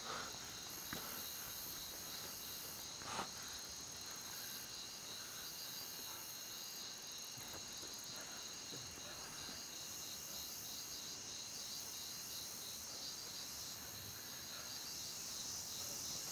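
Faint, steady, high-pitched chirping of insects such as crickets, pulsing rapidly and evenly, with a single soft tap about three seconds in.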